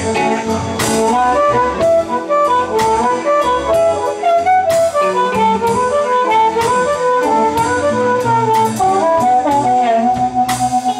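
Amplified blues harmonica solo, the harp cupped against a vocal microphone, playing quick runs of short notes that climb and fall. Behind it a blues band plays electric guitar, bass and drums.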